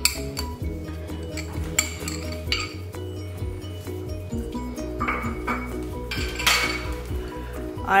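Glass bowls clinking as chopped dates are tipped from a small glass bowl into a larger one of dried fruits: a handful of sharp clinks, and about two-thirds through a brief rush of pieces sliding out. Soft background music plays underneath.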